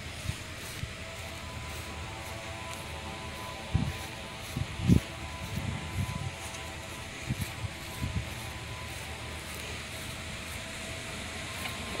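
Steady night-time outdoor background hiss. A faint hum of several steady tones rises in the middle for a few seconds, and soft, irregular low thumps come about once a second for a few seconds.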